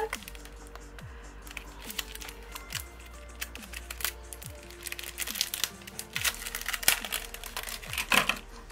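Background music with a steady beat, about one low thump a second, under the crinkling and rustling of a clear plastic packet being handled and opened by hand.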